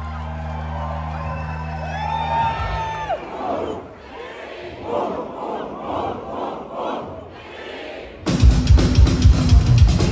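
Live rock band in a concert hall: a held low guitar-and-bass chord rings out and dies away about three seconds in, the crowd shouts and whoops in rhythm, and then the full band with drums crashes in loudly near the end.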